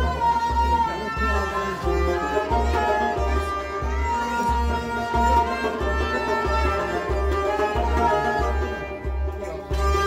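A Kashmiri sarangi-type bowed fiddle playing a sliding melody in Sufi devotional music, over a steady low drum beat of about one and a half strokes a second.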